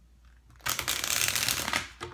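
A deck of tarot cards riffle-shuffled: a fast run of fluttering card clicks that starts about half a second in and lasts just over a second.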